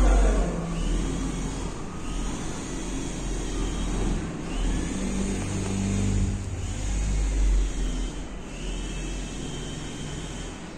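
Road traffic heard through the flat's window: a steady low rumble with the wavering hum of passing vehicle engines.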